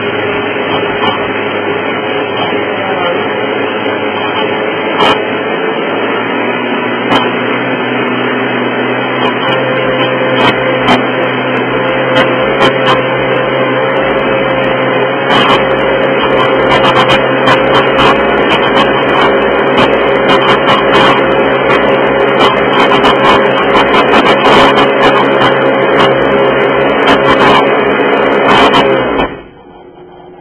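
Kitchen blender motor running at high speed through a thick seed-and-herb cheese mixture. Its pitch steps up twice early on, and quick clicking and rattling in the jar sets in about halfway through. The motor shuts off abruptly just before the end.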